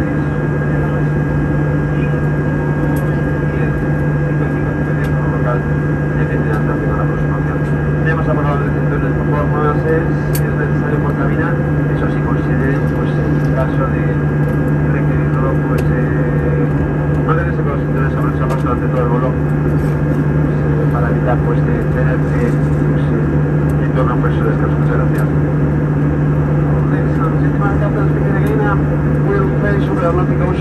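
Steady in-flight drone of an Airbus A320 cabin, a constant low hum from the engines and airflow, with faint murmuring voices of passengers underneath.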